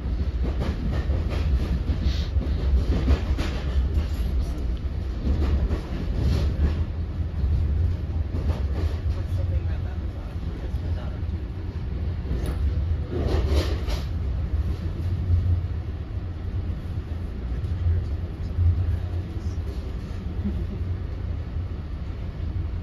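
Inside an NJ Transit Multilevel passenger coach running at speed: a steady deep rumble of wheels on rail, with short surges of louder rattling noise coming and going through the first two-thirds.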